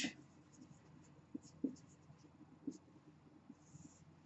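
Whiteboard marker writing on a whiteboard: faint, light scratchy strokes and ticks, ending with a longer stroke as a line is drawn underneath.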